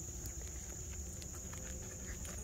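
Steady high-pitched drone of insects, over a low background rumble and a few faint ticks.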